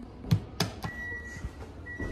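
A few sharp clicks as the close button on a Hyundai Tucson's electric tailgate is pressed, then the tailgate's high warning beep sounds in long steady tones, twice, as the power tailgate begins to close.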